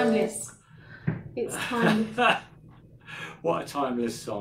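A hymn's final sung note and piano chord die away, then people talk.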